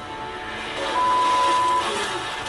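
A single steady electronic beep about halfway through, lasting most of a second, over quiet background music from the TV show.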